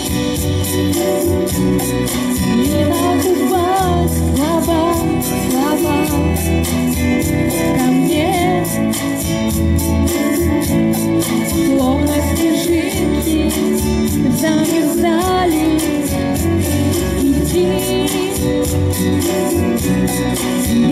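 Pop song backing track with a steady beat and a wavering melody line, with a woman's voice singing over it.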